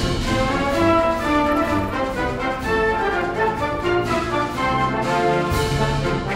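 A brass band with tuba and trumpets playing a tune.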